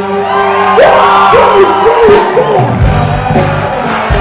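A live rock cover band plays in a large hall while the crowd sings and whoops along. The bass and drums drop back for the first few seconds and the full band comes back in about three seconds in.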